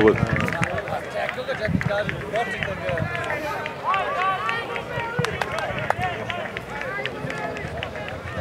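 Several men shouting and cheering at once, their voices overlapping, in celebration of a goal just scored.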